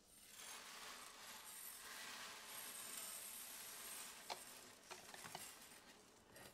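Uncooked rice poured from a plastic cup onto the plastic spoons of a paper-plate water wheel and spilling into a plastic bin below: a faint, grainy hiss for about four seconds, then a few scattered ticks as the last grains fall.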